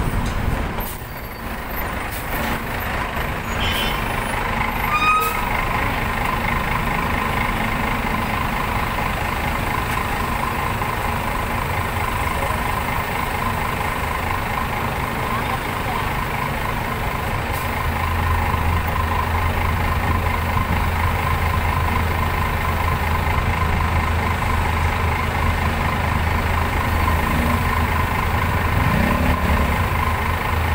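A large bus's engine idling close by over steady road traffic, its low rumble growing louder about two-thirds of the way through.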